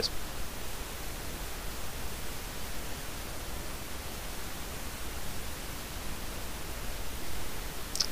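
Steady hiss of a microphone's background noise with a low hum underneath, unchanging throughout.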